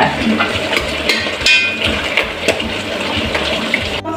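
Steady rushing hiss of a gas stove and simmering pots, with a few light knocks of a spatula stirring a thick soup in a large aluminium pot.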